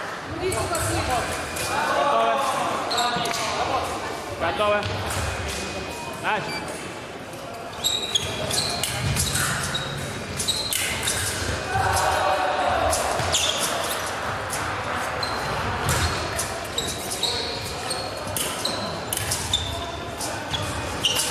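Fencing bout in a large echoing hall: fencers' feet stamping and thudding on the piste, and sharp metallic clicks of steel blades meeting, several with a brief high ring, coming thick from about eight seconds in. Voices carry through the hall.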